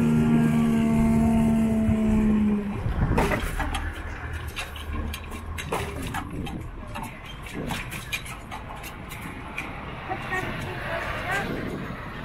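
Level crossing barrier mechanism giving a steady hum as the lifting barrier rises, cutting off suddenly about three seconds in once the barrier is upright. After it, a low road rumble with scattered clicks and knocks as traffic begins to move again.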